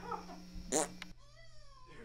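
A single cat meow about a second long, its pitch rising then falling, just after a brief noisy burst.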